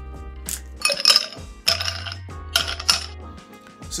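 Stopper being twisted and pulled out of a glass rum bottle, in four short squeaky, clinking bursts over background music.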